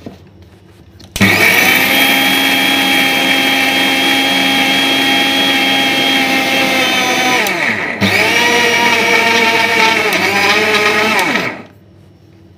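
Prestige Endura 1000 W mixer grinder grinding roasted peanuts, roasted gram, red chillies, garlic and coconut in its steel jar, with no water added yet. The motor starts about a second in and runs steadily. It winds down and stops about seven to eight seconds in, is switched straight back on for a second run, and winds down again just before the end.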